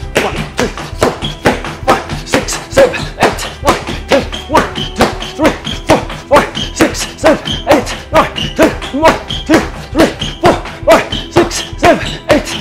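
Rapid, even run of sharp hand slaps on the feet from repeated Cai Jiao slap kicks, about three smacks a second, mixed with footfalls on a wooden floor, over background music.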